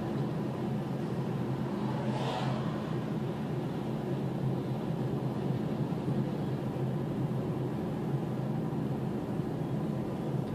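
Steady road and engine noise of a car driving at town speed, heard inside the cabin: a continuous low rumble of tyres and engine. A short hiss rises briefly about two seconds in.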